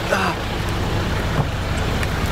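Steady noise of heavy rain mixed with a low rumble of traffic at the roadside.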